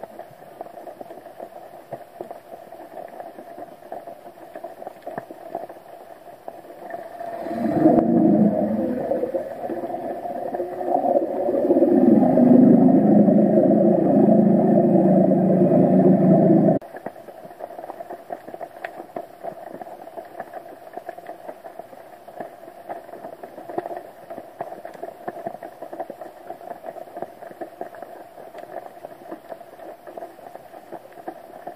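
Underwater sound picked up by a camera on the seabed: a steady crackling hiss of the water, and for about ten seconds in the middle a louder motor hum, most likely a boat engine heard through the water. Its pitch dips and rises at first, then holds steady, and it cuts off suddenly.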